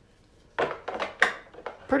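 Clear plastic packaging and AA batteries handled on a tabletop: a quick run of crackles and sharp clicks starting about half a second in, loudest just past a second.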